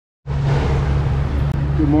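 Boat engine running steadily at cruising speed with wind and water rush over it; the sound begins about a quarter of a second in.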